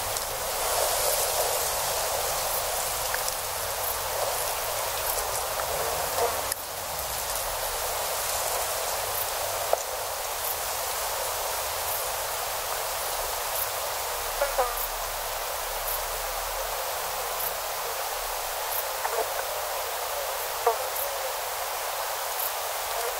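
A steady rushing hiss, with scattered faint clicks and a few short rising chirps.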